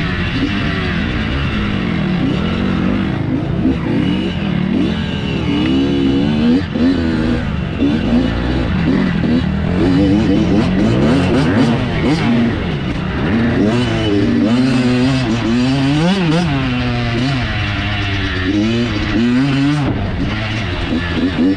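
Off-road dirt bike engine, heard from the rider's helmet, revving up and down continuously as the throttle is worked along a twisting woods trail, its pitch climbing and dropping every second or two.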